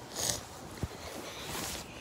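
Handling noise of the recording device being set up and moved: fabric and bedding rustling against it, a short hiss near the start and a soft knock about a second in.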